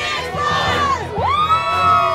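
A group of teenagers cheering and shouting together; about a second in they break into one long, held yell.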